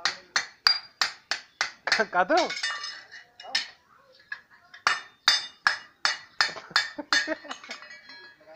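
Hand hammer striking a piece of steel on a small steel block, about three ringing metal-on-metal blows a second, with a pause in the middle. A brief voice cuts in about two seconds in.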